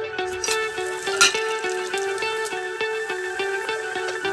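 Background music of quickly repeated plucked guitar notes in a steady rhythm. A short hiss cuts through about a second in.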